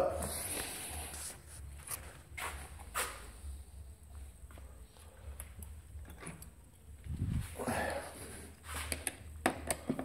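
Scattered light clicks and clunks of hand tools being handled and rummaged through on a workbench.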